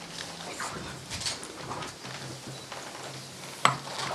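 Room noise of people handling papers at a signing table, with soft scattered rustles and one sharp click near the end.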